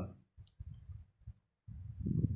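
Faint room noise through a headset microphone, with a single short click about half a second in.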